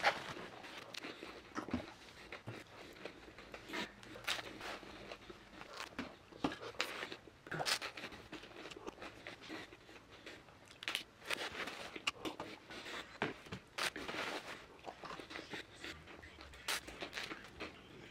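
Close-up chewing and crunching of rice cakes topped with banana slices: irregular, quiet crisp crunches scattered throughout.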